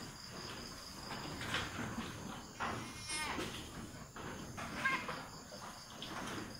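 Goat bleating in two short calls, one around the middle and one near the end, during a hand-assisted difficult kidding.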